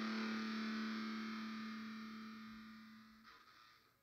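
End-credits song ending on a held, distorted electric guitar chord that rings out and fades away, dying out about three seconds in.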